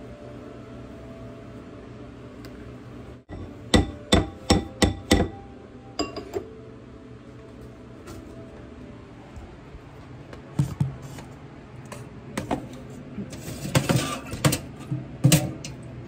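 Sharp knocks of a spatula against a ceramic mixing bowl: a quick run of five taps a few seconds in, like batter being knocked off the spatula on the rim. Scattered knocks and clinks of kitchenware follow, clustering near the end.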